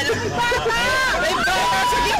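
Several people inside a car exclaiming and shouting over one another, an uproar of overlapping, agitated voices.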